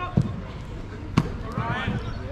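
Two sharp thuds of a football being struck, about a second apart, the second the louder, followed by a player's shout.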